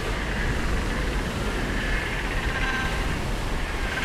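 A huge macaroni penguin colony calling all at once: a steady, dense din of many overlapping braying calls, over the low rumble of surf.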